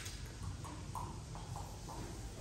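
A wire loop tool scraping clay out of the inside of a hollow clay sculpture head, in a quick series of about six short strokes.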